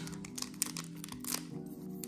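Crinkling and tearing of a foil trading-card booster pack wrapper being torn open by hand, in scattered sharp crackles, loudest about a second and a half in. Soft background music with held notes plays underneath.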